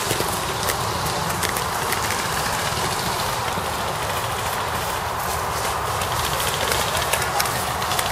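Footsteps and rustling through dry leaf litter as the camera-wearer moves, over a steady low rumble on the microphone, with scattered sharp clicks throughout.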